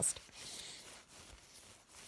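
Faint, soft rustling of a cross-stitch canvas and thread being handled.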